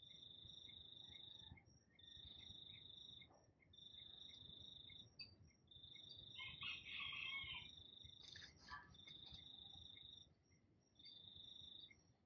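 Faint insect trilling: a high, even tone in phrases of about a second and a half with short pauses between them. A brief lower, warbling sound joins about halfway, and there is a faint click a little later.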